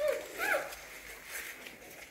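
Two short high cries from hungry newborn puppies: one falling cry right at the start, and a rising-then-falling squeal about half a second in.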